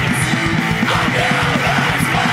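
Fastcore hardcore punk recording: a band playing at full tilt with yelled vocals coming in about a second in.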